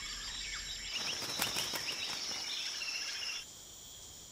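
Tropical rainforest ambience: a steady, high-pitched insect drone with a few faint chirps. About three and a half seconds in it drops to a quieter background.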